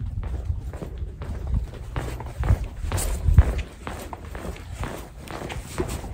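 Hurried footsteps on a concrete floor, with irregular low thumps.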